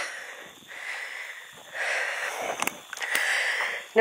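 A person's breathing close to the microphone while walking: a few breathy swells, roughly one a second, with a faint click or two.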